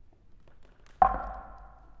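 A struck percussion instrument: one sharp hit about a second in, ringing with a few clear tones that fade over about a second.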